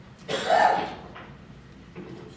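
A person clearing their throat with one short, loud cough, about a quarter second in.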